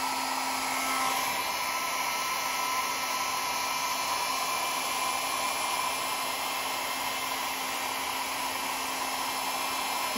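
Small handheld hair dryer blowing steadily: a continuous rush of air with a motor hum, one lower tone of which drops away about a second in. It is blowing hot air across wet alcohol ink.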